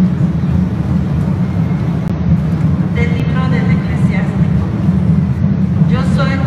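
Steady low rumble of a large, echoing, crowded church, with a voice heard over it briefly about halfway through.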